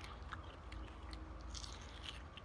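Faint mouth sounds of eating the soft inside and immature seeds out of a split green moringa pod, with a few small, scattered clicks.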